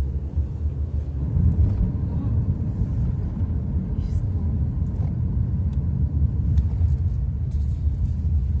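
Steady low rumble of a moving car, engine and road noise, heard from inside the cabin, with a few faint clicks.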